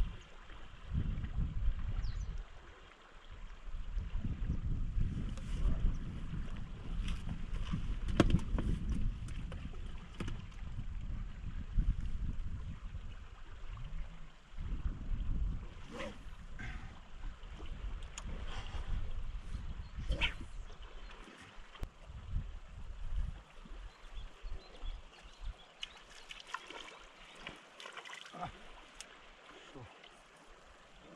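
Wind buffeting the microphone in gusts, over the steady rush of a swollen river. The gusts ease off about two-thirds of the way through, and a few faint clicks come through.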